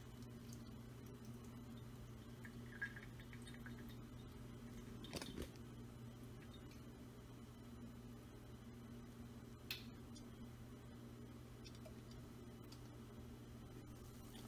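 Near-silent room tone with a faint steady hum and a few faint drips, about three, as grease runs off a tilted non-stick frying pan through its straining lid into a stainless steel sink.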